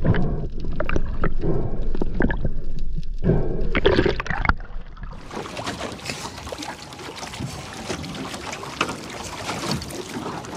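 Muffled underwater rushing and bubbling for about five seconds. Then, at the water's surface beside a small aluminium boat, choppy seawater sloshing and splashing, with a steady hiss.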